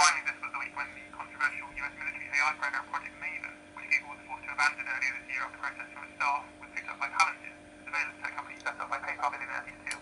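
Podcast speech demodulated by a homebrew 40 m single-sideband superhet receiver with high-side VFO injection, playing through its small loudspeaker: a thin, narrow-band voice with little bass and a steady hum tone under it.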